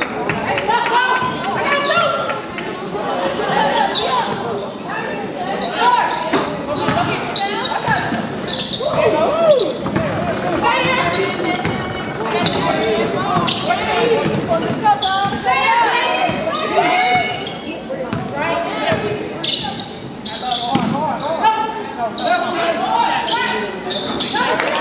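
A basketball being dribbled and bounced on a hardwood gym floor, repeated thuds under continual shouting and chatter from players and spectators, all echoing in a large gymnasium.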